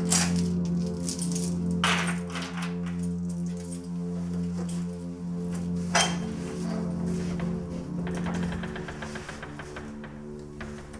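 A steady low drone of background score music, over which keys and a metal door lock clink and clank sharply: once at the start, again about two seconds in, and once about six seconds in. A quick run of small metallic rattles follows near the end.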